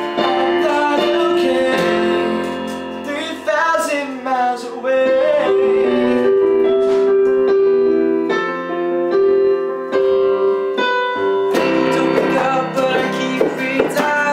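Roland RD-300NX digital stage piano playing sustained chords, with acoustic guitar and wordless sung vocal lines in places. The playing gets fuller about three-quarters of the way through.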